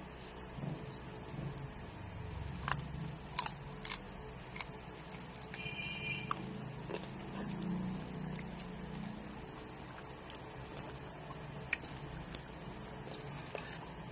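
A person chewing a last mouthful of food, with soft clicks and crunches now and then.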